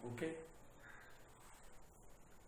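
A man's short spoken 'okay?', then a low room hush with one faint, short animal call in the background about a second in.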